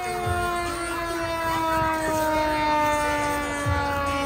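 Fire engine siren sounding one long wail that slides slowly and steadily down in pitch.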